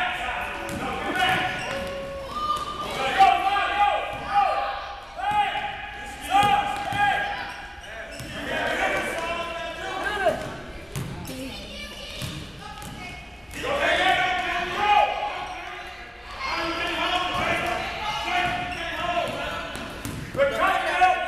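Basketball dribbling and bouncing on a gym floor during a youth game, mixed with shouting voices, all echoing in the large hall.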